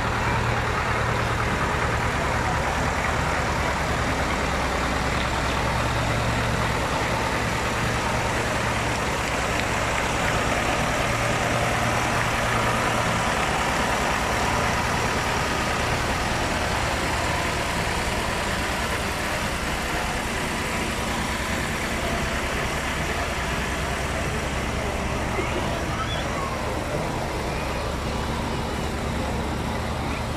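Farm tractor engine running steadily as it tows a parade float past, louder at the start and again near the end, with people talking in the background.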